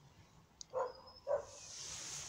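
A big dog barking twice, about half a second apart, a short way off. A soft hiss rises near the end.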